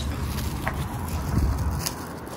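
Low rumble of wind on a handheld phone microphone outdoors, with light handling noise and a faint click about two-thirds of a second in.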